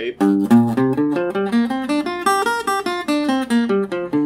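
Acoustic guitar playing a pentatonic scale shape one note at a time, stepping up in pitch through the first half or so and then back down.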